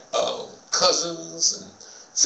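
A man speaking, with one drawn-out, steady-pitched vowel about a second in.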